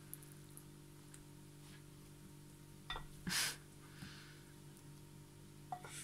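Quiet kitchen room tone with a steady low hum. A few faint clinks of a spoon against a glass bowl as diced fruit is spooned out, and one short noisy puff about three seconds in.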